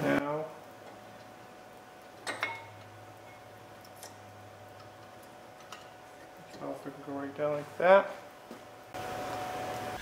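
A brake caliper being handled and refitted over the rotor: a sharp metal knock about two seconds in and a few light clinks, over a faint steady shop hum. Brief muffled voice sounds come at the start and again near the end.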